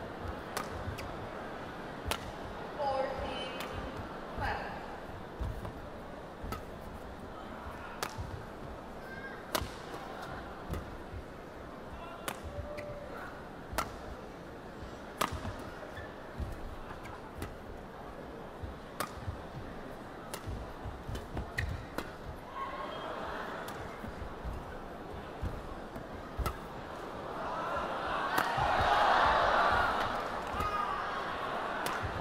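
Badminton rally: racket strings striking the shuttlecock a little under once a second, with short shoe squeaks on the court floor, in an arena. The crowd's noise swells near the end.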